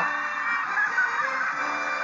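Game-show music playing from a television broadcast, heard through the TV's speaker: steady held tones with no speech over them.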